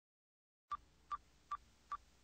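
Silence, then four short electronic beeps at one pitch, evenly spaced a little over two a second, starting under a second in: the beep sound effect of an animated logo intro.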